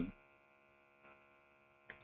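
Faint steady electrical mains hum, many evenly spaced tones held level, as a word trails off at the start; a short faint click just before the end.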